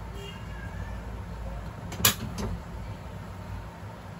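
Two sharp knocks about two seconds in: a loud one, then a fainter one a third of a second later. They sound over a steady low rumble of room noise.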